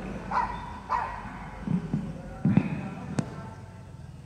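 A handheld microphone being handled: a few low bumps and then one sharp click. Early on, two short high-pitched calls are heard faintly.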